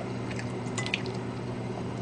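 Quiet, wet eating sounds of tteokbokki in sauce: chopsticks picking through the saucy rice cakes and soft chewing, with a few faint clicks.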